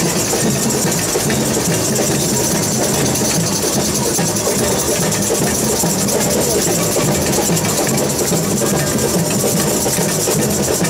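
Samba bateria playing a steady, loud groove: surdo bass drums pulsing underneath a dense, fast rattle of higher percussion.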